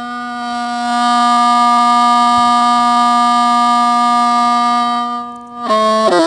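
Hmong bamboo raj flute played solo: one long held note that swells after about a second, followed near the end by a brief run of quicker notes.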